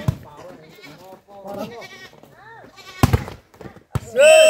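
A volleyball being hit during a rally: sharp slaps at the start, about three seconds in and again just before the end, as the ball is struck and then lands on the court. Players and spectators shout in between.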